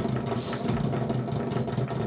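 Baitcasting reel cranked at a steady pace, a continuous mechanical whir of its gears as line winds tight onto the spool.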